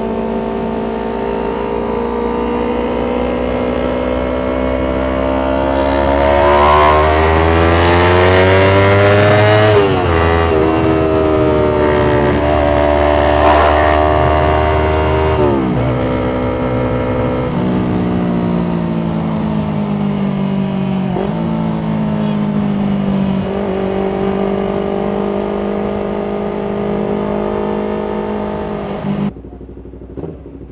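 Yamaha MT25's 250 cc parallel-twin engine running while riding, its note climbing under acceleration and falling at gear changes about ten and fifteen seconds in, then holding steadier at cruise. The sound cuts off suddenly shortly before the end.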